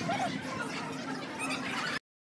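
Background murmur of voices with several short, high-pitched chirps or squeals scattered through it; the sound cuts off abruptly at the end.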